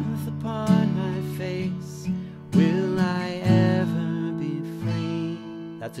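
Steel-string acoustic guitar strummed on a C chord, a strum about every second, with a man singing a melody over it; the chord changes to G near the end.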